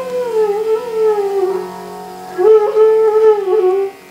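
Bansuri (bamboo flute) playing a slow, gliding, ornamented melody in Hindustani Raag Bhairavi over a steady low drone. The flute phrase breaks off about a second and a half in and comes back about a second later.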